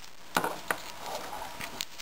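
A plastic Bic lighter and a hand-warmer packet being set down on a wooden tabletop: a few light knocks, the first and loudest about half a second in, with soft crinkling of the packet's plastic wrapper between them.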